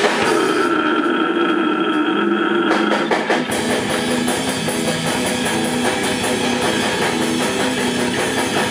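Slamming brutal death metal played live: guitars, bass and drum kit, loud. About a second in, the drums and the deep low end drop out, leaving a held, slightly wavering note. A few hits bring the full band back in with a steady beat at about three and a half seconds.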